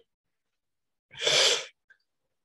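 A single sudden sneeze-like burst of breath, about half a second long, loud against a silent pause.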